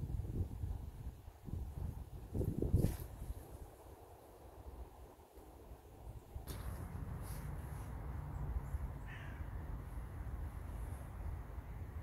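Outdoor sound at the water's edge while a fishing rod is handled and cast: low rumbling handling and wind noise with a short sharp sound nearly three seconds in, then a steadier background with one brief call about nine seconds in.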